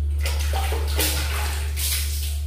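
Water splashing in several irregular bursts as a person washes and rinses off her body, over a steady low hum.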